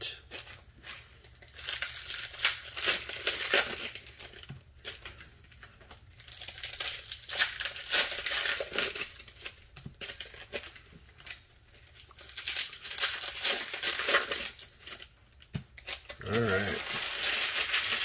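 Foil wrappers of Bowman Platinum baseball card packs crinkling and tearing as they are opened by hand, in irregular bursts with short lulls between.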